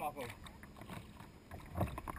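Kayak paddling: a paddle blade dipping into the water and water washing against the hull, with one louder stroke near the end.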